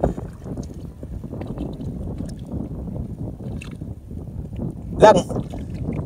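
Shallow seawater sloshing around an arm pushed down into a hole in the seabed, with a steady low rumble and many small scattered clicks. A sharp knock comes right at the start.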